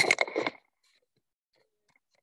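A short spoken word in a woman's voice in the first half second, then near silence with a few faint ticks.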